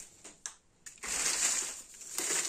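Potting soil poured from a plastic tub into a plastic seedling cell tray: a steady grainy rustling hiss that starts about halfway in, after a short tap.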